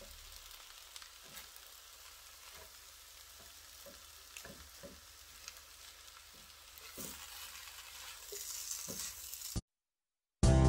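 Fried rice sizzling in a wok while a spatula stirs and tosses it, with scattered taps and scrapes of the spatula against the pan. It gets louder over the last few seconds, then cuts off suddenly just before the end.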